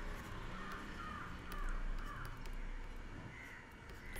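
Faint bird calls repeating in the background, over a low steady hum.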